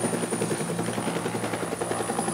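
Helicopter hovering close overhead: the rapid, steady beat of its rotor blades, with a thin steady high whine above it.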